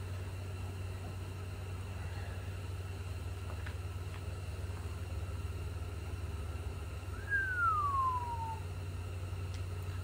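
A steady low hum. About seven seconds in, a single high whistle-like tone falls in pitch over about a second.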